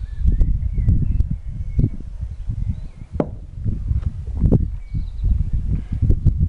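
Wind buffeting the microphone in a steady low rumble, with several sharp clicks and knocks from a beer glass being handled and drunk from.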